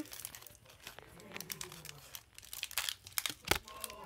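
Pokémon trading cards being handled and flipped through, with crinkling from foil booster-pack wrappers: scattered light crackles and clicks, and a sharper knock about three and a half seconds in.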